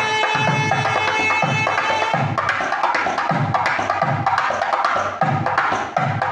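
A thavil barrel drum played with a stick and capped fingers: deep strokes about twice a second under quick sharp clicks. A nadaswaram plays long held notes over it for about the first two seconds, after which the drumming is the main sound.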